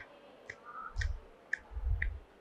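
Faint, sharp clicks at an even pace of about two a second, with soft low thumps between them.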